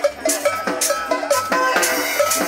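Live cumbia band playing a steady dance beat: a cowbell strikes about twice a second, a metal scraper rasps and pitched notes repeat in a short riff.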